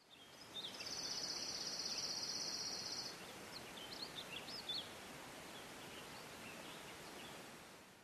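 Outdoor field ambience with a steady hiss. A high buzzing trill lasts about two and a half seconds near the start, then a few short bird chirps follow around the middle.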